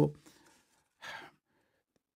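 A man's short, soft intake of breath about a second in, in a pause between phrases of speech, just after the last word fades.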